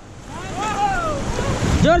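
Steady rush of whitewater rapids around a paddled inflatable raft, with wind buffeting the microphone. A shout rises and falls about halfway through, and shouting starts again near the end.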